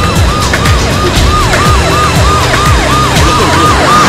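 Police siren cycling in a fast rise-and-fall, about three times a second, over a film score with a heavy low beat.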